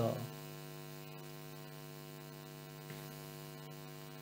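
A steady electrical hum holding one pitch, with a faint buzz above it. It runs on unchanged in a pause of the voiceover. The tail of a spoken word fades out in the first moment.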